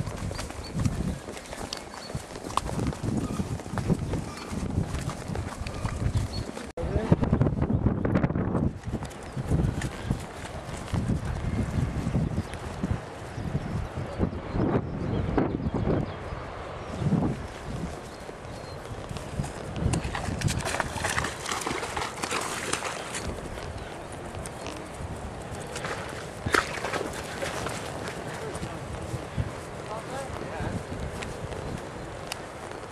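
Horse hooves clip-clopping as a horse is ridden along a trail, heard from the saddle as a run of irregular knocks.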